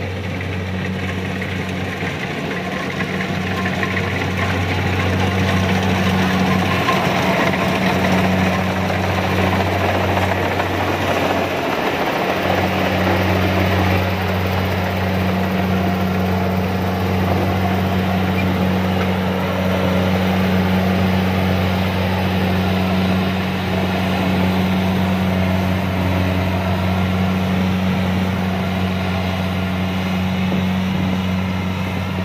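Kubota DC-70 combine harvester running under load while harvesting rice: a steady diesel engine drone with the noise of the cutting and threshing machinery over it. The engine note dips briefly about twelve seconds in.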